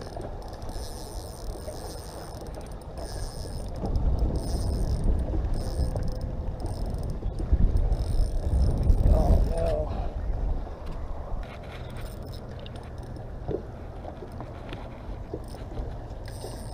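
Spinning reel being worked against a large jack crevalle on a light rod, its mechanism running through the fight. A heavy low rumble comes in from about four to ten seconds in.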